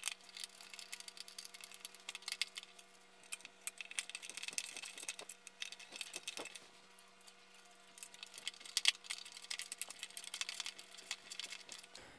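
Light, irregular clicks and rattles of injection-molded plastic printer parts and small hardware being handled and fitted together by hand, over a faint steady hum.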